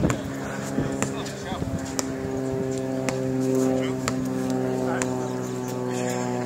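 A basketball bouncing on a hard court, a handful of irregular knocks. From about a second and a half in, a steady low motor drone joins it and swells a little midway.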